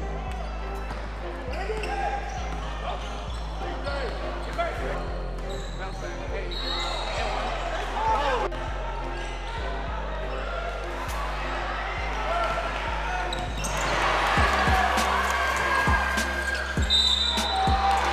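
Background music with a steady bass line laid over basketball game sound: a ball dribbled on a hardwood gym floor, short sneaker squeaks and voices calling out. The game sound grows louder about two thirds of the way in.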